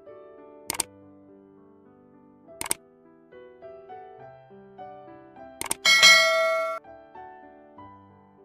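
Soft background piano music with three sharp mouse-click sound effects spread over the first six seconds, followed about six seconds in by a bright bell ding that rings for under a second, the loudest sound: the click-and-notification-bell effect of a like-and-subscribe animation.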